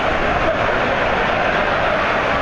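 Heavy rain pouring down on a stadium, a steady, even rush of noise, with faint crowd voices underneath.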